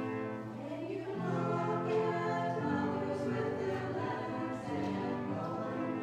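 Slow sacred music of long held chords with a choir-like sound, changing chord every second or so.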